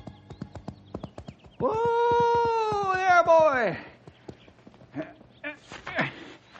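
Radio-drama sound effect of a horse: hooves clopping at a quick, even pace, with one long whinny in the middle that holds its pitch, then wavers and falls away. A few scattered hoof clops and short sounds follow.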